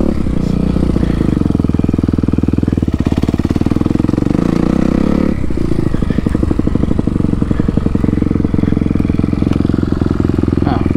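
Kawasaki dirt bike engine running under throttle while riding a motocross track, its note steady with a fast, even pulsing. The sound changes abruptly about five seconds in.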